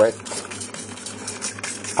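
Hand trigger spray bottle spraying water onto damp substrate and rotten wood, an even hiss of spray.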